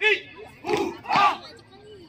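A squad of security guards shouting short drill calls in unison during a baton drill, three sharp shouts within about a second and a half.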